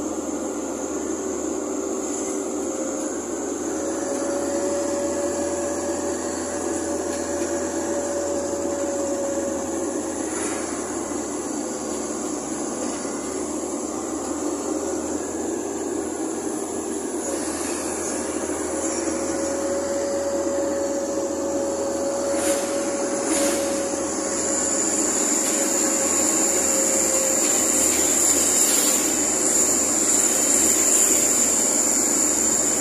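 Steady road and engine noise of a car driving along a road, heard from inside the vehicle, with a faint whine that wavers slightly in pitch. Steady high-pitched tones run over it.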